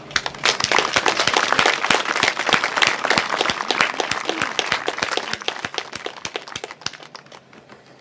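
Audience applause: many hands clapping, building up within the first second, then thinning out and fading over the last few seconds.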